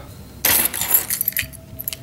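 A ring of car and house keys jangling as it is handled, starting about half a second in, followed by a few light clinks.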